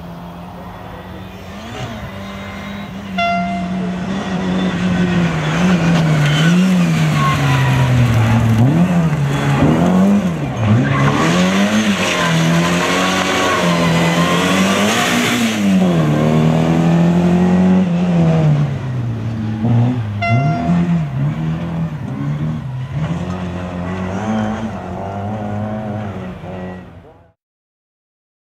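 A rally car's engine is revving hard, its pitch swinging up and down repeatedly as the driver lifts off and accelerates through corners. It grows loud about three seconds in, stays loud for most of the stretch, then fades and cuts off just before the end.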